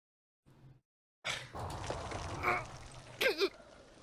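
Cartoon crash sound effect: after a second of silence, a sudden impact about a second in, followed by rumbling debris noise and a short vocal cry near the end.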